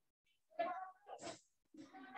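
A child's voice speaking faintly through the video-call audio in two short stretches, the second starting just before the end.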